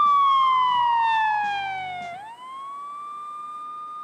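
Siren-like sound effect: one whining tone that slides down for about two seconds, then swoops back up and holds, over the tail of the show's rock music bed, which stops partway through.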